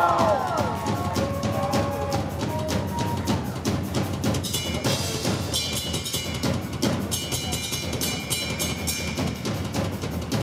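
Rock drum kit played live in a solo: rapid snare and tom strikes over the bass drum, with cymbals ringing over the beats from about halfway through. Shouts from the crowd fade out over the first two or three seconds.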